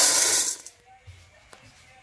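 A cupful of dried popcorn kernels poured into the metal pot of a popcorn machine: a brief rush of rattling grains that stops about half a second in.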